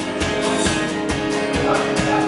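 Acoustic guitar strummed in a steady, even rhythm of chords.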